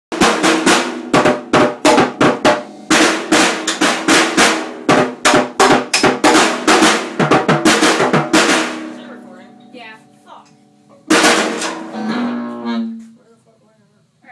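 Fast, hard, evenly spaced drum strikes under a loud electric guitar for about eight seconds, then a guitar chord left ringing and dying away. A last chord is struck about eleven seconds in and fades out.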